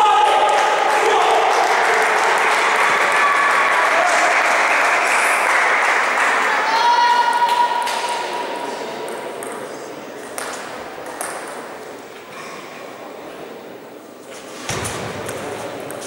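Voices and hall noise echo in a large sports hall for the first half, then fade. Table tennis balls make light pinging taps, a few sharp ones about two-thirds of the way through, with a heavier knock near the end as play resumes.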